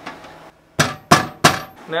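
Three sharp metallic knocks about a third of a second apart on a steel drum, as a rubber stopper is pressed into its bung hole to seal it.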